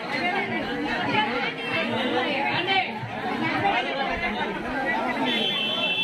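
A crowd of many people talking over one another at close range. About five seconds in, a steady high-pitched tone starts and holds.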